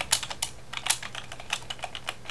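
Computer keyboard keys clicking in a quick, irregular run.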